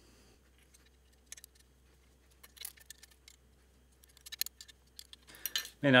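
Faint scattered metallic clicks and clinks of an Allen wrench working the limb-pocket locking and adjustment screws on an Elite compound bow's riser, with a quick run of clicks about four seconds in.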